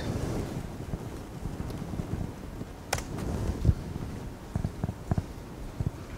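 Quiet hum of a lecture hall picked up by the microphone, with a few scattered clicks and light knocks, one sharp click about halfway through and several small ones near the end.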